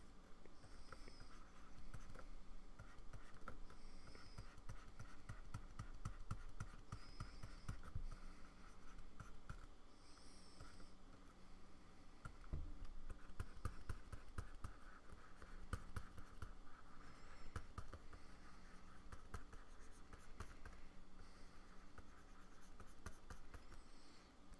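Faint scratching and tapping of a pen stylus on a Wacom Cintiq pen display's screen, in many quick, irregular strokes.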